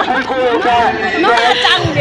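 Only speech: several people chatting over one another at close range.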